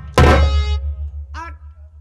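A single loud hand-drum stroke that ends the quick drum rhythm, ringing on with a long deep tail. About a second and a half later comes a short cry that falls in pitch.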